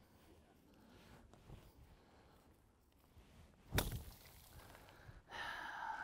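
Golf iron striking the ball out of a cactus patch: one sharp whack about four seconds in, otherwise quiet.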